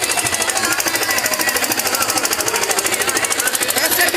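A rapid, steady mechanical rattle of about ten or eleven pulses a second, with faint voices underneath.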